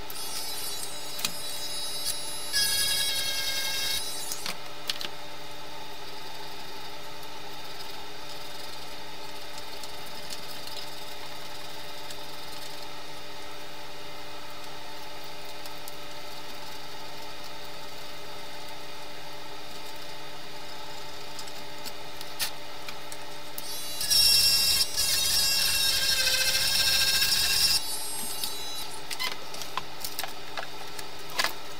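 A small electric motor whirs twice, for about a second and a half near the start and for about four seconds near the end, over a steady electrical hum, with light clicks between.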